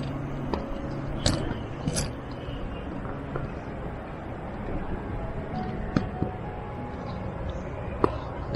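Footsteps on a rocky gravel trail, with a few sharp clicks of footfalls on stone, over a steady low rushing noise.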